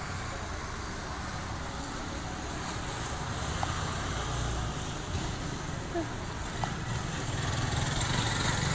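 Steady outdoor background noise: a low rumble with hiss across the range and a few faint ticks, with no clear single source.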